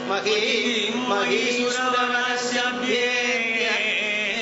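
A male voice singing a Kathakali padam in long, ornamented notes that bend and waver in pitch, over a steady drone.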